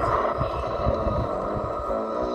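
Steady rain, heard as a noisy hiss through a playback speaker, with soft low thuds underneath.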